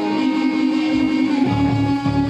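A live grunge band playing an instrumental passage with no vocals: an electric guitar holds one long, steady note. About three-quarters of the way through, low, evenly repeated bass notes come in under it.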